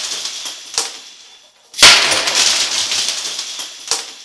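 A mug-full of small metal jingle bells poured onto a desk: a clattering jingle as they spill and scatter, dying away over about a second. A second, identical spill about two seconds in jingles and rattles away in the same way.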